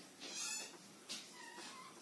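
Felt-tip marker writing on a whiteboard: two short scratchy strokes, the second with a thin squeal.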